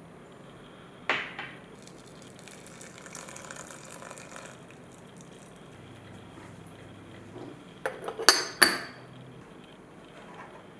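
Clinks of a black stoneware teapot, its stainless-steel infuser and lid: one sharp clink about a second in, a softer stretch of a couple of seconds, then a quick run of four or five clinks near the end as the lid is set on.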